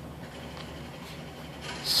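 Faint steady background noise with a low hum, no distinct events, and a spoken word just before the end.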